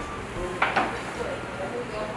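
Restaurant background with faint voices, and a brief clatter of tableware a little over half a second in.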